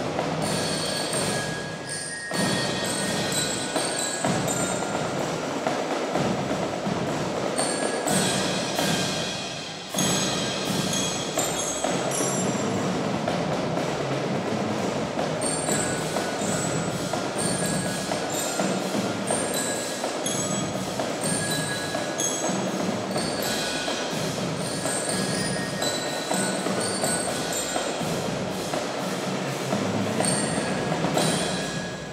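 Youth percussion ensemble playing: marching drums together with mallet keyboards (marimbas and xylophones), a continuous rhythmic pattern of struck notes, with short dips in volume about two seconds and about ten seconds in.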